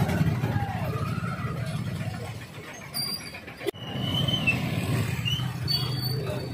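Street traffic: motorbike and vehicle engines running with general street noise. A brief sharp drop-out comes a little past halfway.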